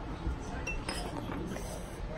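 A few faint clinks of glass about a second in, a small glass hot-sauce bottle being picked up from among other bottles, over low handling noise.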